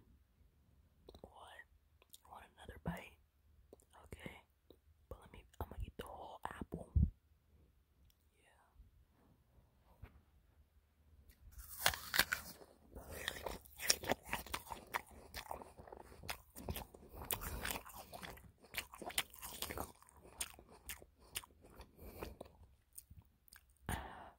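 Close-miked bites into a raw apple and sloppy, crunchy chewing. The first few seconds hold scattered mouth sounds; a dense stretch of crunching begins about halfway through.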